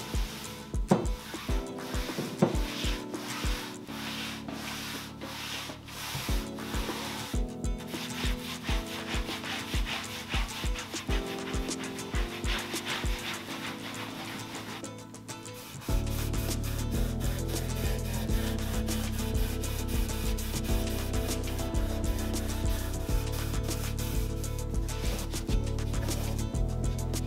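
A cloth rag rubbing white wax over a chalk-painted wooden tabletop in repeated wiping strokes. Background music with a steady beat runs underneath and gets noticeably louder about two-thirds of the way through.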